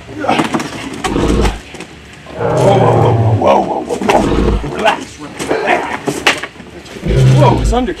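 Low, steady-pitched roaring growls, one about two and a half seconds in lasting about a second and another near the end, with deep thuds between them and scattered vocal noises.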